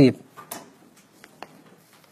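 A man's voice ends a short word at the very start, followed by a quiet room with a few faint, brief clicks and taps.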